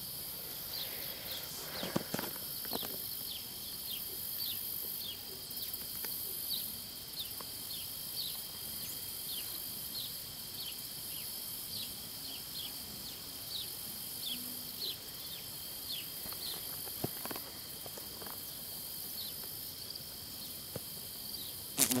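Steady, shrill chorus of outdoor insects, with many short falling chirps over it throughout. A few faint knocks come from handling the phone.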